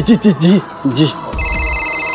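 A mobile phone starts ringing about one and a half seconds in: a steady electronic ringtone made of several high tones held at fixed pitches.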